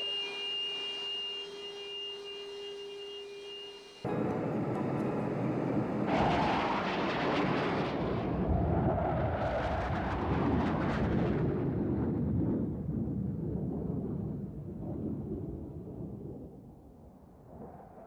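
Two steady tones, one high and one low, in a jet cockpit for about four seconds. Then a Panavia Tornado's twin RB199 turbofans making a low-level pass: the jet noise swells from about six seconds, stays loudest until about twelve, and fades away as the aircraft goes by.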